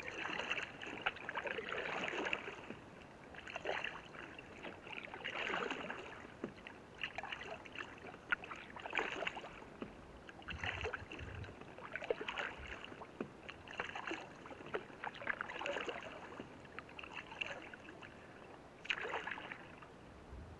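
Canoe paddle strokes dipping and splashing in the water, a stroke every second or two in a steady rhythm.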